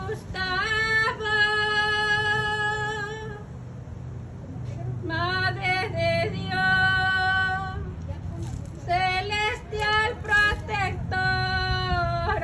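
A woman's voice singing without instruments, in long held notes, with a short break about four seconds in. A steady low rumble sits underneath.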